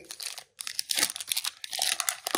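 Foil wrapper of a football trading-card pack being torn open and crinkled by hand: a rapid papery crackle that breaks off briefly about half a second in, then runs on as steady crinkling.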